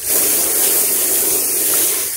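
Garden hose spray nozzle jetting water onto a wet cotton onesie and a plastic tray, rinsing out the ice dye: a steady spray hiss that comes on abruptly.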